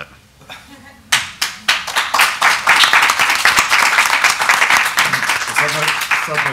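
Audience applauding. It starts suddenly about a second in and settles into steady clapping that begins to thin near the end.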